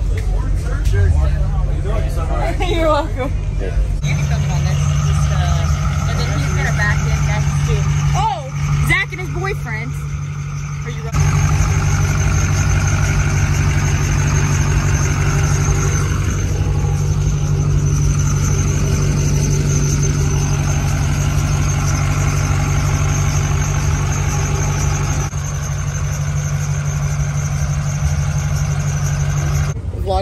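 Pickup truck engine running at a steady low idle, its deep hum holding for most of the stretch and changing suddenly a few times, with people's voices in the background.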